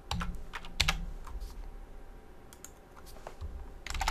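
Typing on a computer keyboard: an irregular run of single keystrokes with short pauses between them.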